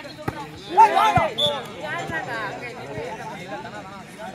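A volleyball spike lands with one sharp smack just after the start. About a second in, men's voices break into loud shouts, and calling and chatter go on after.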